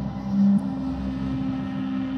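Ambient music outro: a sustained low drone of held notes, with a louder low note swelling briefly about half a second in.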